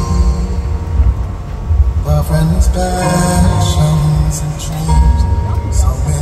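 A male singer performing a slow ballad live over a backing track with heavy bass, sung through a PA system, with long held notes.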